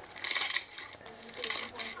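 Hands squeezing and pressing clear glittery slime, giving two bursts of crackling and popping about a second apart as air pockets burst.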